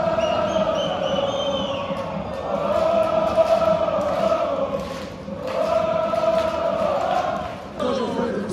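A stadium crowd of football supporters chanting in unison. The chant comes in three long sung phrases with short breaks between them.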